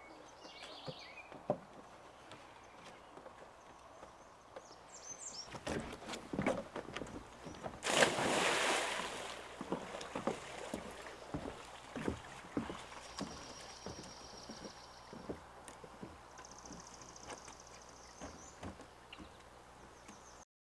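Footsteps on a wooden boardwalk, faint, regular knocks about two a second, with a louder rustling burst about eight seconds in. A high, rapidly pulsing trill sounds twice in the second half.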